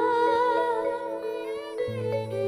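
A young girl singing a held, wavering note with vibrato over sustained instrumental accompaniment; her voice glides down and falls away just before the end, and a low bass note comes in.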